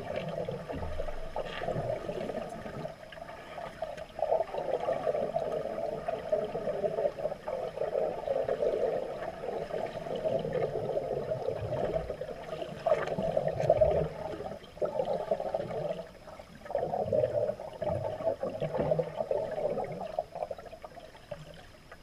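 Muffled underwater water noise picked up by a camera submerged in a swimming pool: a fluctuating gurgling rush that surges and dips.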